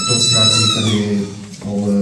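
A man speaking into a microphone, with a brief high squeal over his voice in the first second that slides down in pitch.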